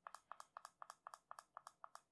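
Faint, rapid clicking of a small push button on an Argon40 Pod Display, pressed over and over to step the screen brightness down. The clicks come in quick pairs, about four pairs a second.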